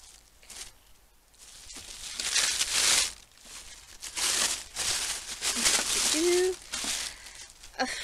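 Packaging around a drinking tumbler being crumpled and torn off by hand, in a string of crinkling, rustling bursts that start about a second and a half in.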